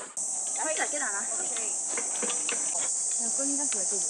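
Steady, high-pitched chorus of insects buzzing in the trees.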